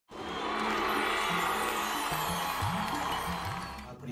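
Intro music: a dense, sustained sound with low sliding notes in the second half, fading out near the end.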